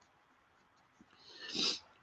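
Near silence, then a man's short, audible intake of breath about one and a half seconds in, just before he speaks again.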